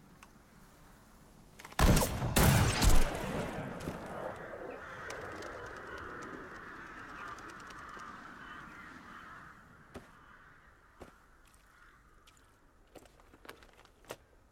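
A loud sniper rifle shot about two seconds in, echoing for about a second. A flock of birds follows, taking off and calling for several seconds before fading.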